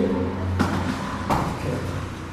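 A steady low hum with two brief thuds of movement on foam training mats, about a second in and again near the end.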